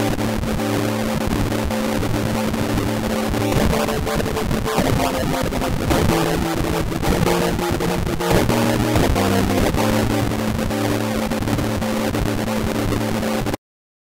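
Sampled keys notes played through Renoise's Decimator filter, its frequency stepped at random by an envelope, so the sustained tone flickers and crackles rapidly while the notes change a few times. The same random sequence runs again for each note played. The sound cuts off suddenly near the end.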